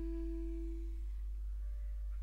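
A single long held woodwind note in a quiet jazz passage, dying away about a second in, with a faint higher note sounding near the end.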